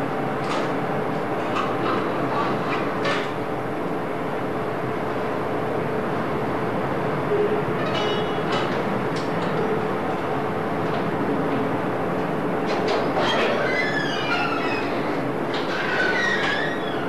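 Steady rushing noise with a faint hum throughout, the worn noise floor of an old analogue video soundtrack, with a few scattered short clicks and a wavering high-pitched squeak-like sound about three quarters of the way through.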